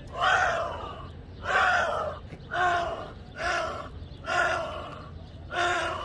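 A death whistle blown in six short screeching blasts about a second apart, each starting loud and fading, some sliding slightly down in pitch.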